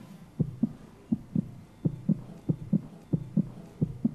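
Heartbeat sound effect, a steady double thump ('lub-dub') repeating about one and a half times a second, played as a game-show suspense cue during a countdown.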